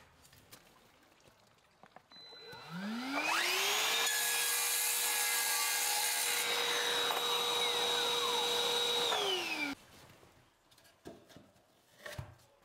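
Sliding mitre saw cutting a laminate floorboard: the motor starts about two seconds in with a rising whine, runs steadily through the cut, then winds down and stops short near the end, with its hooked-up dust extractor running alongside.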